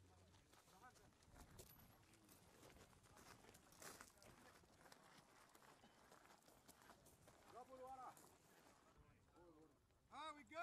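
Near silence, with faint scattered crunches and clicks and a few faint distant words about three quarters of the way through.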